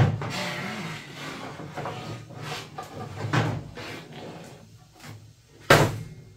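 Lawn tractor mower deck being dragged out from under the tractor: irregular scraping and clattering of metal against the frame and lift, with a sharp knock at the start and a loud bang near the end.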